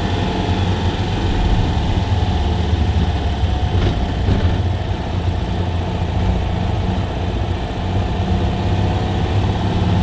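The 425cc air-cooled flat-twin engine of a 1959 Citroën 2CV running steadily at low speed, heard from inside the small car's cabin.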